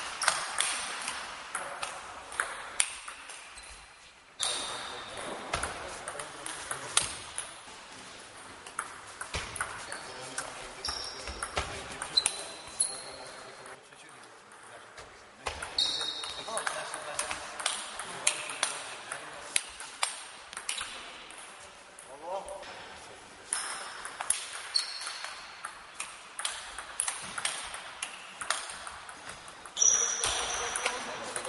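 Table tennis rallies: the celluloid ball clicks off the bats and the table in quick, irregular runs, with short gaps between points.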